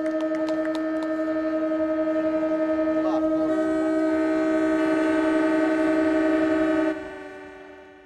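Boat horns in the harbour sounding together in one long held chord, another horn pitch joining about halfway through; the sound fades out near the end.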